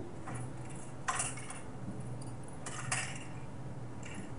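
A few faint, light clicks and rustles of hands handling cables and parts inside an open computer case.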